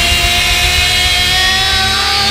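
Live glam rock band: a distorted electric guitar holds one long note that bends slowly upward, with bass and drums underneath.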